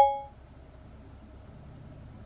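A single short electronic chime from the Toyota Camry's infotainment voice-control system, ringing out briefly at the start, as the spoken command is accepted and processed. After it, only a low steady cabin hum.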